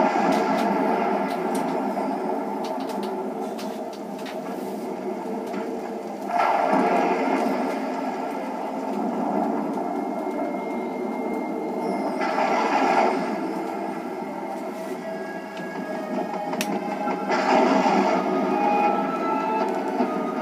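A film trailer's soundtrack playing from a TV speaker: sustained music without dialogue, swelling louder about six, twelve and seventeen seconds in.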